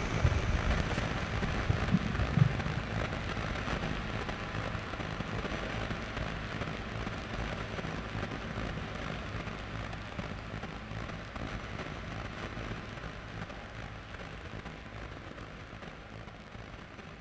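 Ambient electronic synthesizer music fading out: a dense crackling noise texture with a few low thuds in the first couple of seconds, slowly dying away.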